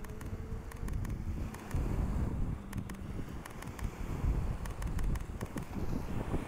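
Wind buffeting the microphone with a low, uneven rumble, while a Sony A1 camera shutter fires a few sharp clicks in small clusters during a flash photo burst.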